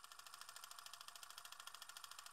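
Faint, fast mechanical clicking from an old camera's mechanism, about a dozen clicks a second in a steady run.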